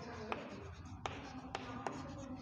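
Chalk writing on a chalkboard: scratching strokes broken by several sharp taps as the chalk strikes the board.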